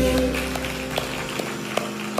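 A live worship band's closing chord ringing out and slowly fading as the song ends, just after the singer's last note falls away. Scattered sharp taps sound over it.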